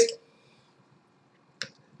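Mostly quiet, with one short click about one and a half seconds in.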